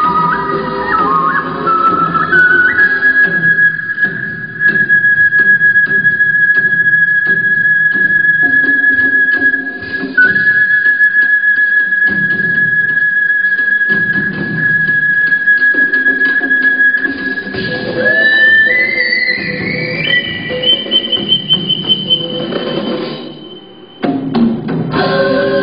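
Violin playing one long high note with vibrato over a backing track, then climbing in steps to a higher held note near the end.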